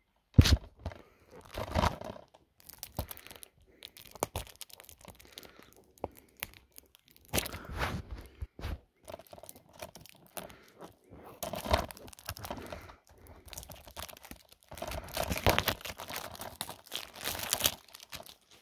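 Plastic shrink-wrap being torn and crinkled off a DVD case, in irregular bouts of crackling separated by short pauses.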